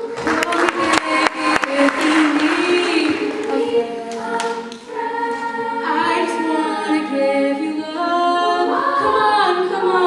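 Girls' choir singing a cappella in held harmonies, with a solo voice on a microphone out front. A few sharp clicks sound in the first two seconds.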